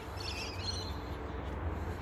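A bird chirping faintly in a short warbling phrase in the first second, over steady low background rumble.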